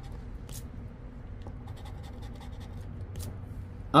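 A coin scraping the latex coating off a scratch-off lottery ticket: soft, scattered scratches as the last play spot is uncovered.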